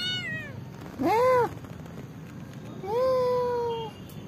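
Tabby-and-white kitten meowing: the falling end of one meow, then a short loud meow that rises and falls about a second in, and a longer, slightly falling meow about three seconds in.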